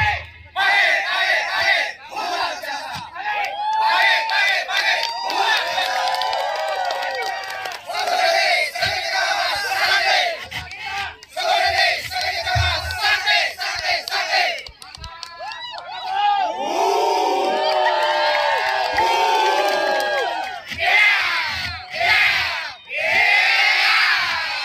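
A squad of men shouting together in unison during a group drill. The shouts come in a series of phrases, one to several seconds long, with short breaks between them.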